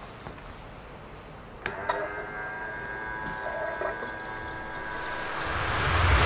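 Electric fuel-drum transfer pump switching on with a click, then running with a steady whine as C16 race fuel pours through its hose into the car's tank.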